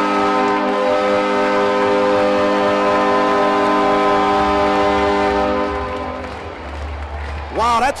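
Arena goal horn sounding one long held blast of several steady tones at once, the celebration signal for a home goal, over a cheering crowd. It fades out about six seconds in, and a commentator starts talking near the end.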